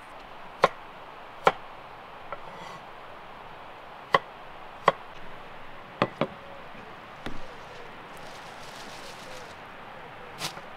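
A kitchen knife chopping on a wooden cutting board: single sharp knocks at uneven intervals, six in all, two of them close together about six seconds in, then a brief softer clatter just after.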